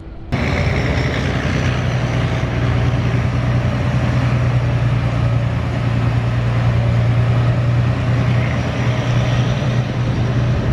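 A large engine running steadily at a constant pitch, cutting in abruptly a moment after the start, with a strong low hum.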